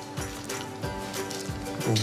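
Background music with steady held tones.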